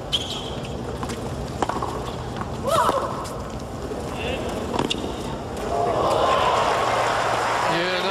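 Tennis rally: racket strikes on the ball about every one and a half seconds, with a player's short, shrill grunt on one shot near three seconds. From about six seconds in, crowd applause and cheering swell up as the point ends.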